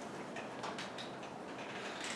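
Faint, scattered keyboard clicks from a laptop being typed on, over steady room noise.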